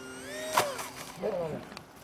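A radio-controlled model jet's fan whining as it flies low, cut off about half a second in by one sharp crunch as the model crashes into the grass, breaking its nose. A brief shout follows.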